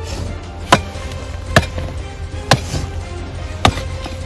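Four sharp strikes, roughly a second apart, like a tool chopping or hitting hard ground, over background music.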